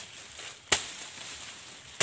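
Machete chopping through dry crop stalks: sharp single cuts about a second apart, one clear stroke about three-quarters of a second in and the next right at the end.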